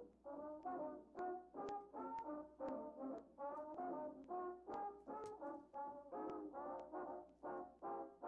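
Background swing big-band music: a brass section playing short, clipped chords, about three a second.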